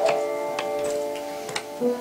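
Piano music played back from a video: held notes of a slow piano piece ring and fade, with a new note near the end. A few sharp ticks sound over them.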